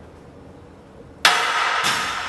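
Loaded barbell racked onto a flat bench's steel uprights: a sudden loud metal clank about a second in, a second knock half a second later, and a ringing tail.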